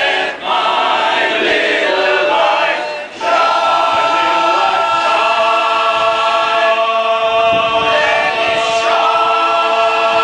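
Male barbershop chorus singing a cappella in close harmony, with two brief breaks early on and then long sustained chords.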